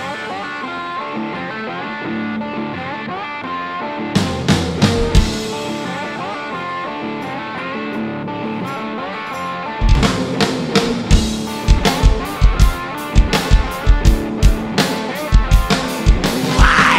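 Live rock band playing an instrumental section: electric guitar carries a quieter passage with only a brief run of drum hits about four seconds in, then the full drum kit comes back in about ten seconds in with steady, regular beats and cymbals.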